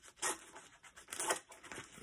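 Scissors cutting through a sheet of paper, two cutting strokes about a second apart.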